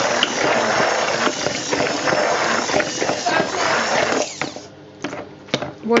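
Soap batter being whisked in a bowl to mix in titanium dioxide: a continuous mechanical churning noise that stops about four and a half seconds in.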